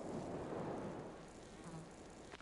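A dense swarm of lake flies buzzing, a thick hum of countless wings. It swells at first and fades toward the end.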